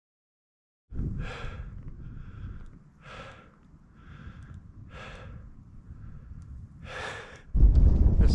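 A man breathing heavily in and out, about one breath a second, starting about a second in, with wind rumbling on the microphone; a louder blast of wind noise hits near the end.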